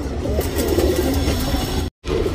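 Domestic pigeons cooing over a steady low rumble, which cuts off abruptly to silence just before the end.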